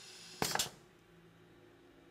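Pneumatic cylinder on a trainer board stroking out under a timer-valve circuit: one short burst of compressed-air hiss with a knock, about half a second in.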